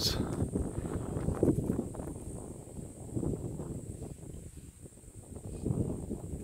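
Uneven low outdoor rumble, with a thin steady high-pitched insect drone above it.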